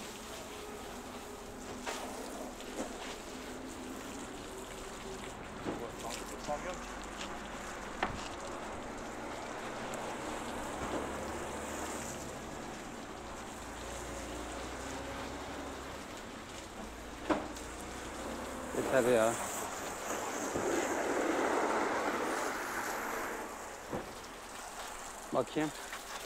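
Long-handled wash brush scrubbing the wet, soapy painted cab of a truck, with a few sharp knocks along the way. A louder rush of water spray runs for a few seconds near the end.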